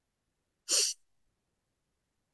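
A single short breath noise from a woman at the microphone, a quick rush of air lasting about a third of a second, a little under a second in.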